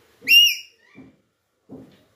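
Alexandrine parakeet giving one loud, clear whistled call that rises and then falls, followed by a few faint low knocks.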